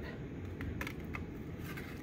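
Faint light ticks and rustles of a cut paper cup and yarn being handled as the yarn is passed under a paper strip, over a low steady room hum.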